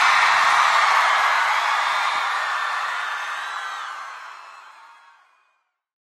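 Large concert crowd cheering and screaming, fading out to silence a little over five seconds in.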